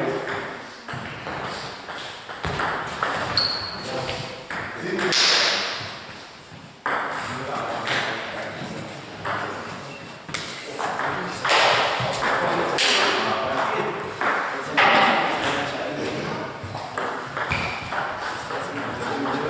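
Table tennis balls clicking off bats and table in short irregular hits, with people talking between them.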